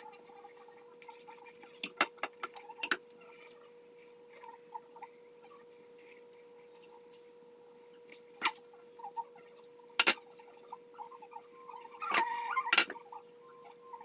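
Scattered clicks, taps and rustles from hands handling a bubble curling wand and hair, with a louder cluster of them near the end, over a steady faint hum.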